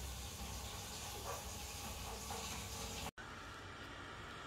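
Steady low rumble and hiss of a car cabin on the move. It cuts out abruptly for an instant about three seconds in and resumes a little quieter.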